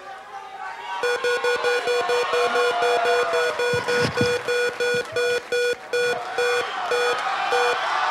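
The Price is Right Big Wheel spinning, sounding a short electronic beep each time a space passes the pointer. The beeps start about a second in, come rapidly at first, then space out to about two a second as the wheel slows to a stop.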